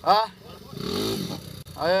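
Dirt bike engine running, with a brief rise and fall in revs about a second in, as the bike's rear wheel spins in mud for traction. A short shout at the start and another near the end.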